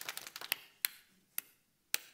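Brief hand applause: a quick flurry of sharp claps that thins out to single claps about half a second apart.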